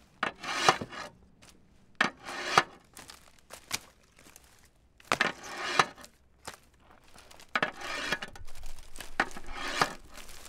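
Experimental noise track made of rough rubbing and scraping sounds. They come in irregular bursts of about a second each, with quieter gaps between them, and grow into a denser, steadier rasp over the last couple of seconds.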